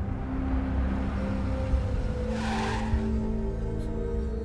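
A car drives up and brakes to a stop, with a short burst of tyre noise a little past halfway, under film background music with long held notes.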